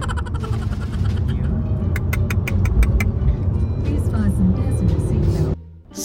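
Steady low rumble of road and engine noise inside a moving Honda car's cabin, with music over it. The sound drops away suddenly shortly before the end.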